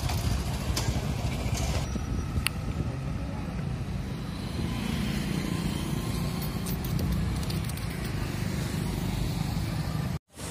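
Road vehicle noise: a steady low rumble from a vehicle travelling along a town road, with a few short clicks.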